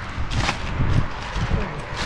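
A brief rustle of plastic-wrapped ice-cream packs being handled about half a second in, over a low, uneven rumble.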